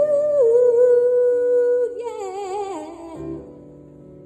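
A woman singing to electric keyboard accompaniment: she holds one long note, then slides down through a wavering, falling run, and the phrase fades out near the end over soft sustained keyboard chords.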